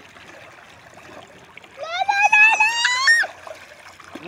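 A child's high-pitched squeal, rising slightly, lasting about a second and a half from about two seconds in, over soft splashing of river water.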